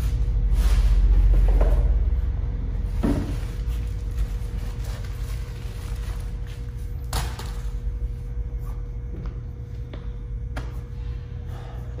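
Shoes and shoebox packing being handled: a few scattered sharp knocks and clicks over a low rumble and a faint steady hum. The rumble is loudest in the first two seconds.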